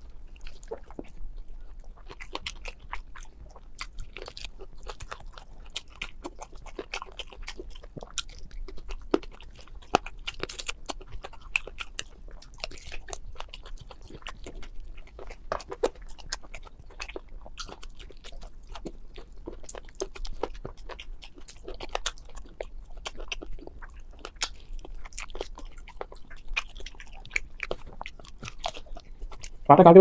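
Close-miked eating of chicken feet curry with rice by hand. Steady, irregular wet chewing, smacking and small crunches.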